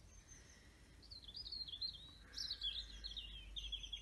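A songbird singing a run of high, rapidly warbling phrases, starting about a second in, with a low steady hum underneath.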